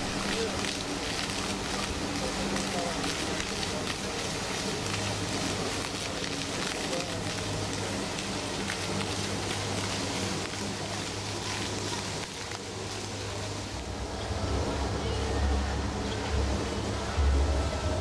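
Outdoor street ambience: a floor fountain's water jets splashing steadily, with people's voices in the background. The splashing thins after about twelve seconds, and a low rumble comes in near the end.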